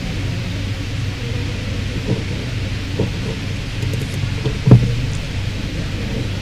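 Steady low hum and hiss of background noise, with a few soft knocks and one sharp thump about three-quarters of the way through.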